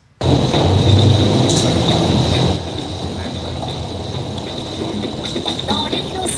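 Audio of a web video clip starting suddenly over the hall's sound system: a loud, noisy rumble for about two seconds, then a quieter steady noise with a thin high whine throughout.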